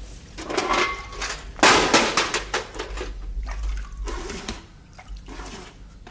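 Water splashing as a man washes himself: several bursts of splashing, the loudest about two seconds in, thinning out toward the end.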